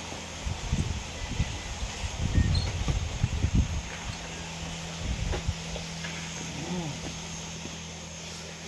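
Irregular low knocks and thuds from a heavy carved wooden door being unlatched and pushed open and people stepping through, over a steady low hum.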